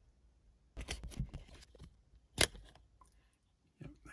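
Small plastic wiring connector being worked off the convertible top's locking microswitch housing: a cluster of light plastic clicks about a second in, then one sharp click a little past the middle.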